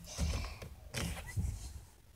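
Soft creaks and rustles from movement in a car seat, in a few short bursts.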